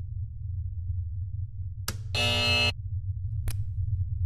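Steady low electronic hum, broken by a click, then a harsh buzzer tone lasting about half a second, and another click near the end.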